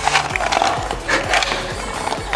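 Background music, with a young chimpanzee making breathy vocal sounds twice over it.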